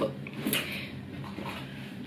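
Faint handling noise as a leather handbag is reached for and picked up, with a small bump about half a second in, over quiet room tone.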